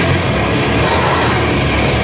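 Extreme metal band playing live: a loud, dense wall of distorted electric guitar and bass with drums, without a clear break.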